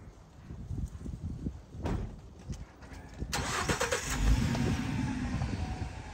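A car engine is cranked and starts about three seconds in, then runs steadily at idle. A single thud comes about two seconds in.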